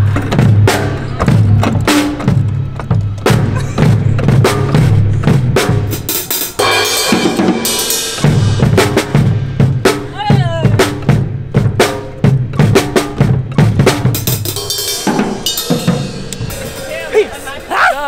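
A drum kit played in a steady beat: bass drum and snare strokes with Zildjian cymbals. The bass drum drops out for a moment about six seconds in, and then the beat picks up again.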